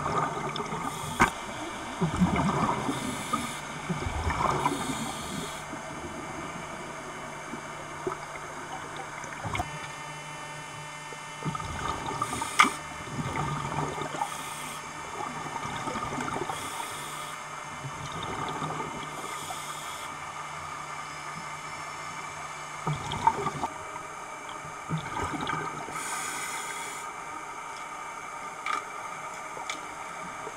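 Scuba diver breathing through a regulator underwater: a hissing inhalation and a gurgling rush of exhaled bubbles every few seconds, over a steady low hum.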